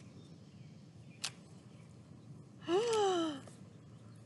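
A woman's short wordless vocal exclamation, a drawn-out "ohh" that falls in pitch, about three-quarters of the way in. It comes after a single sharp click about a second in.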